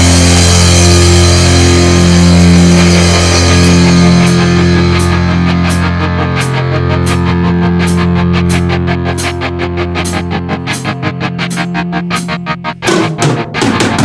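Rock music with a sustained, distorted electric guitar and bass chord. Rapid, evenly spaced pulses grow across it from about four seconds in and become dense. The chord fades in the last few seconds, and a loud drum-kit hit comes near the end.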